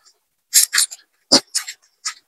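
Close-miked chewing and wet mouth smacks from eating ramen noodles and shrimp: a handful of short, crisp smacks in quick succession.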